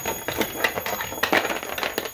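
Small toys being handled and set down on a wooden floor: a run of light, irregular clicks and knocks, with a faint steady high-pitched tone behind.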